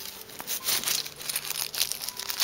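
Packaging crinkling and rustling in quick, irregular crackles as it is handled, busier after about half a second.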